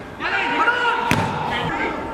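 Footballers shouting to one another on the pitch, with no crowd noise, and a single sharp thud of a football being kicked a little after a second in.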